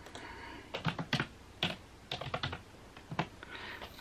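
Typing on a computer keyboard: irregular key clicks in short runs with pauses between them.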